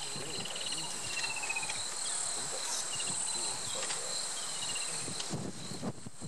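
Steady, high-pitched shrill of a cricket chorus, with a short descending trill in the first two seconds and a few soft knocks near the end.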